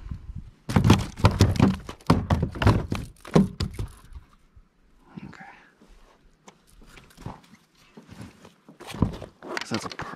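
A rapid run of thumps and knocks on a plastic kayak deck as a freshly landed walleye is handled and unhooked, the fish knocking against the hull. The knocks are loudest and densest in the first few seconds, then thin out to a few scattered knocks, with one more strong knock near the end.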